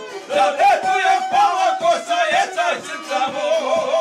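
Several men singing loudly together, with a violin playing along.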